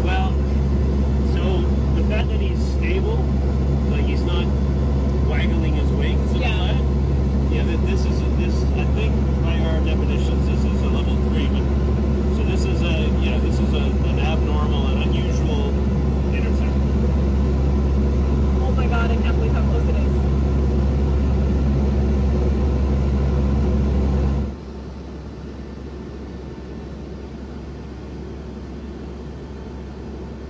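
Steady, loud low engine drone heard inside the cabin of a military plane in flight. About 24 seconds in, it drops abruptly to a quieter, steady cabin hum.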